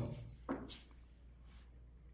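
Raw corvina fish cubes being dropped by hand into a glass bowl on a kitchen scale, faint and soft, with one brief louder sound about half a second in; the rest is close to quiet.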